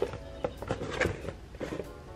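A cardboard box and tissue paper being handled and emptied: a scatter of light knocks and paper rustles, about five in two seconds.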